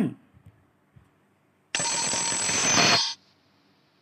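A short recorded bell-like ring, lasting about a second and a half from about two seconds in, played from the textbook's audio track as it starts.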